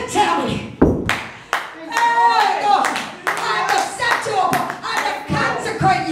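A woman's voice through a microphone in a drawn-out, half-sung delivery, with hand clapping keeping a steady beat about twice a second.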